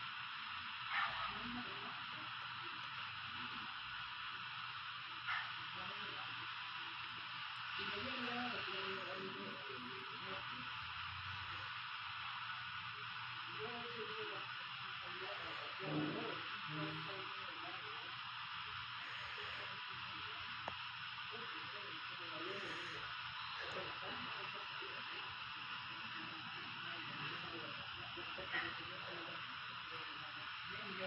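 Steady hiss with faint, muffled voices and sounds underneath, like several recordings playing over one another at once. A few brief louder blips stand out, the loudest about halfway through.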